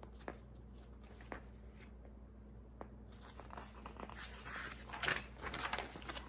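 Faint rustle of a picture book's paper page being turned by hand, with a few soft clicks at first and louder rustling in the last two seconds as the page flips over.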